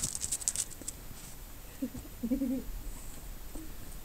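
A quick run of crisp crunching and rustling clicks in the first second, then a couple of brief, faint, low-pitched vocal sounds about two seconds in.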